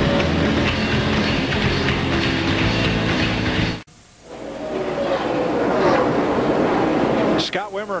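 Race car V8 engine heard through an onboard camera, running at a steady pitch, cut off abruptly about four seconds in. Then the sound of stock cars on the track rises from quiet.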